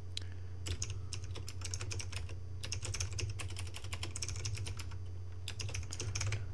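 Computer keyboard typing: a quick, uneven run of keystrokes that starts about a second in, over a steady low hum.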